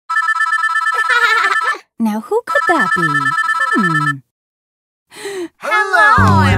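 Mobile phone ringtone: an electronic trilling ring that sounds twice, for about two seconds each time, with a woman's voice over it.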